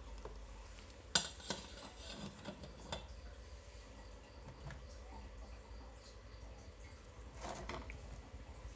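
Light clatter of a speaker protector circuit board being picked up and handled on a wooden workbench: a sharp click about a second in, a few smaller knocks over the next two seconds, and a brief rustle near the end, over a steady low hum.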